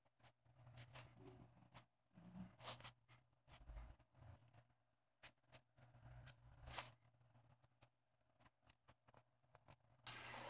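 Near silence, broken by faint scattered taps and scratches of a marker pen dotting a rubber floor mat and a small plastic ruler being moved over it, the clearest a little before the seven-second mark.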